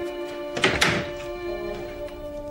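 A panelled wooden door pulled shut, two quick knocks close together a little over half a second in, over soft string music.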